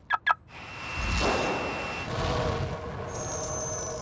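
Two short squawk-like vocal bursts, then a cartoon jet's engine noise swelling up and running on, with a high whine joining about three seconds in.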